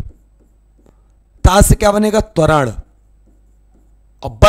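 A man's voice says one short word in the middle; around it, faint scratching and tapping of a pen writing on a board.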